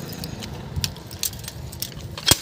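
Keys and metal gate hardware jingling and clinking in a string of light, separate clicks as a chain-link steel gate is being unlocked and opened.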